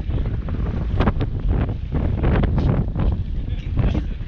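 Strong wind buffeting the microphone, a dense, loud low rumble, with a few short knocks about a second in and again past the middle.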